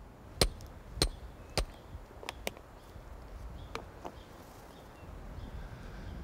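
Rock hammer striking a basalt outcrop: three sharp blows about half a second apart, then a few lighter clinks of rock as a fresh piece is chipped off.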